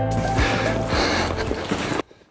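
Background music with a low held bass line, turning to a noisier wash about half a second in and cutting off abruptly at the end.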